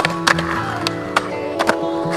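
Music plays throughout, with about six sharp, irregularly spaced clacks of skateboards popping and landing on concrete.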